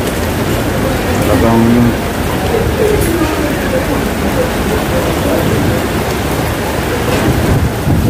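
Heavy rain pouring down steadily: a loud, even hiss.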